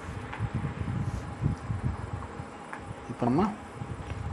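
A man's voice speaking briefly about three seconds in, with low muttering before it, over a steady faint hum in the background.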